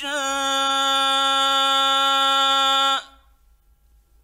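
A male Quran reciter in the mujawwad (melodic tajweed) style holds one long, steady note at the end of a phrase, then breaks off abruptly about three seconds in.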